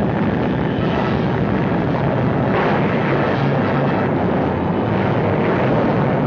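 A steady, noisy roar with a low rumble underneath, holding an even level throughout with no sudden blast or break.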